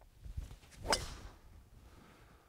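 A golf driver striking a ball off the tee: one sharp crack of the clubhead on the ball about a second in.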